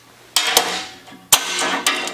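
About four sharp metallic clanks, each ringing briefly, as steel hand tools (a hammer and locking pliers) are set down and handled on a steel shop table.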